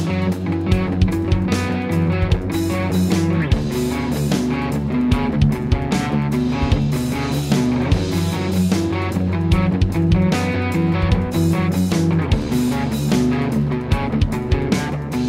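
Schecter seven-string electric guitar playing a rock song through an STL Tonehub Atrium Audio amp-sim preset, as part of a full song mix with steady, regularly spaced hits.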